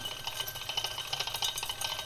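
Magnetic stirrer spinning a stir bar in a glass Erlenmeyer flask of spirit with undissolved menthol crystals: a quick, irregular rattling against the glass, with a faint steady high tone underneath.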